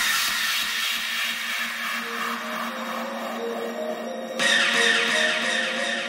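Breakdown in a hardcore electronic track: the drums and bass have dropped out, leaving held synth chords with a short repeating synth figure. A brighter synth layer comes in suddenly about four seconds in.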